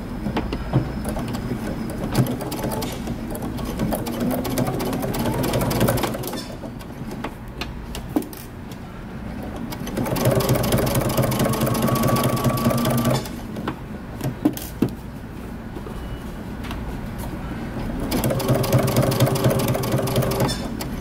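Electric domestic sewing machine stitching through layered cotton shirt fabric as a collar is sewn into its neckband, running in spells that speed up and slow down, loudest in the first few seconds, about halfway through and near the end.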